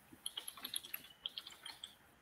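Computer keyboard typing: a quick, irregular run of light key clicks, faint.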